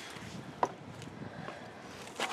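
Small diagonal cutters snipping a plastic cable tie: one sharp click about half a second in, and a fainter click near 1.5 s, over low background noise.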